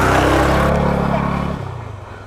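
Motorcycle engine running steadily as the bike rides off, then dying away about a second and a half in.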